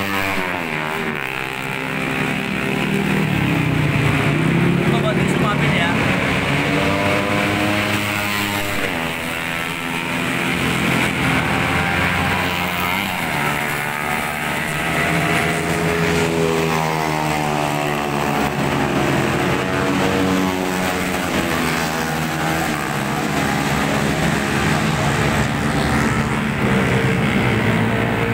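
Road traffic running past, mostly motorcycle and car engines, their pitch rising and falling as they speed up and pass.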